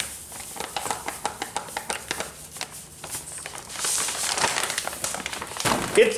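Plastic bag of citric acid granules crinkling and rustling as the granules are poured out of it into a stainless steel bowl of warm water, a dense run of small crackles that grows louder about four seconds in.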